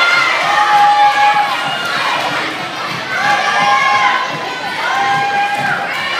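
Crowd of schoolchildren shouting and cheering in a large sports hall, many long held shouts overlapping, urging on the runners in a race.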